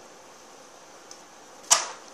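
Faint hiss, then near the end a single sudden loud swish that fades within a moment: the leaves of an artificial plant shaken as a kitten climbs in it.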